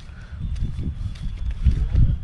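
Footsteps on a paved street, a few soft uneven thuds, under a low rumble of wind and handling noise on the moving camera's microphone.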